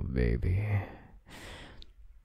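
A man's low, voiced moan, followed about a second later by a breathy sigh.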